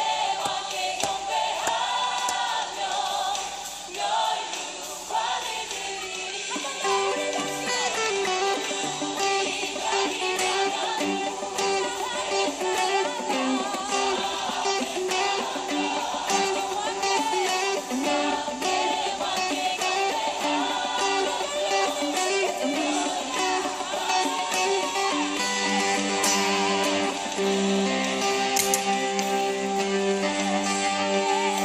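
Electric guitar played as a melodic line within continuous music, the notes wavering in pitch; lower notes fill in near the end.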